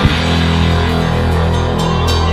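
Live rock band holding a sustained chord, with steady low notes ringing on after the drumming stops at the start.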